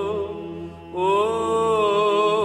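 Slow vocal chant as background music: a long-held, slightly wavering sung line over a low steady drone. The voice fades out briefly and comes back in about a second in.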